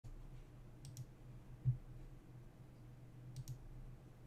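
Quiet room tone with a steady low hum, broken by a soft thump about halfway through and two pairs of faint clicks, one about a second in and one near the end, from the computer being worked.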